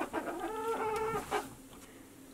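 Pet hen calling: a drawn-out, even-pitched cluck held for most of a second, then one short sharp note, after which it goes quiet.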